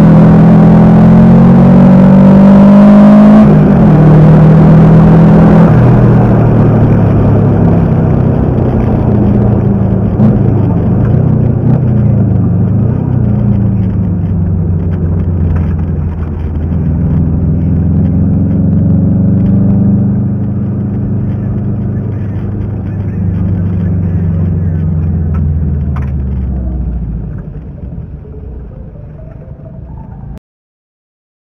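In-cabin sound of a turbocharged Subaru Impreza GC8's flat-four engine under load. The revs climb, then drop sharply about three and a half seconds in, waver and climb again, then fall away and fade out near the end.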